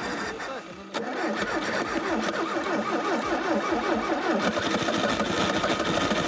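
Frozen car engine on a cold start at about −30 °C, cranked with the accelerator floored and struggling to catch. It starts about a second in and keeps going with an uneven, repeating beat, growing a little louder.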